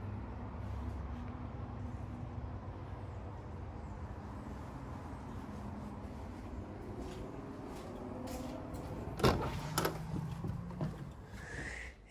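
Steady low background hum, then two sharp knocks about half a second apart near the end, a glass-paned exterior door being opened and shut.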